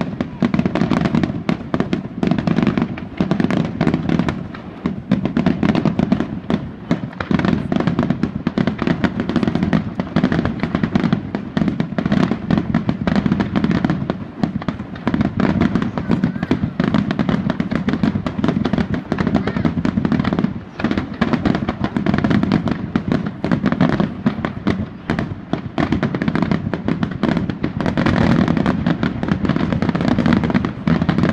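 Aerial firework shells bursting in a rapid, unbroken barrage of bangs and crackle, many reports a second, over a continuous rumble.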